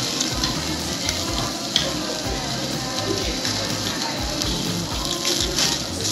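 Beef sizzling on a tabletop yakiniku grill: a steady frying hiss, with one sharp click a little under two seconds in. Music with a regular bass beat plays underneath.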